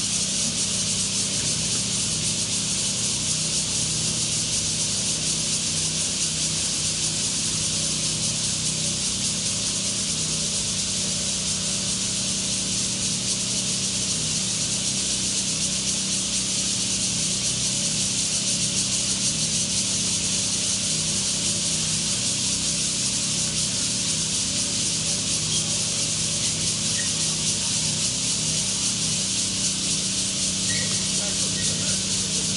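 A steady, even high-pitched hiss with a low hum beneath it, unchanging throughout.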